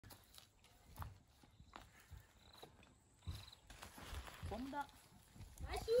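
Footsteps in sandals on a dirt garden path: a few faint, irregularly spaced taps and scuffs.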